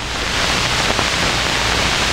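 A loud, steady rushing hiss that builds slightly at first and then holds evenly.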